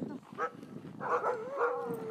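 Sled dogs whining and howling, eager to go for a run: a short yelp, then wavering calls that settle into one long held howl near the end.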